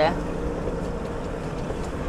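Truck driving at highway speed heard from inside the cab: a steady low engine and road rumble with a faint constant hum.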